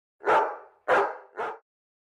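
A dog barking three times, the third bark shorter and quieter, with dead silence between the barks.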